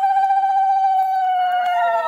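Women ululating (Bengali ulu-dhwani): one long, wavering high call that slowly sinks in pitch, with a second, higher call joining near the end and overlapping it.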